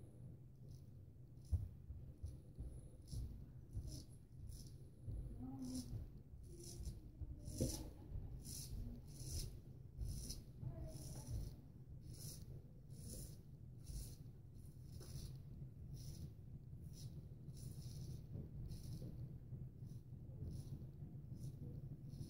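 Gold Dollar 66 carbon-steel straight razor scraping through lathered stubble on the cheek in a long run of short, faint strokes, about one or two a second.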